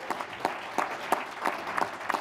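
Audience applauding, with many separate hand claps heard distinctly.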